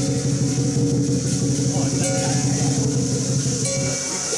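A large Chinese drum is played in a rapid, continuous roll, a steady pitched rumble that stops just before the end.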